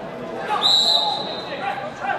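Referee's whistle blown once, a single long high note of a little over a second starting about half a second in, the signal that the free kick may be taken. Spectators' voices murmur underneath.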